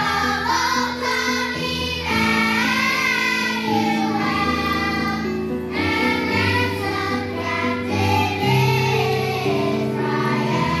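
Children's choir singing together, with steady held instrumental notes in the low range underneath the voices.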